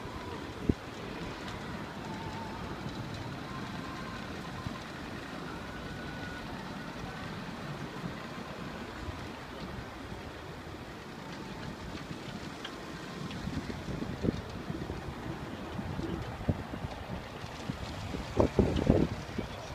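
Night-time city square ambience: a steady hum of traffic and distant people, with wind buffeting the phone's microphone in low gusts and thumps near the end, and a sharp click about a second in.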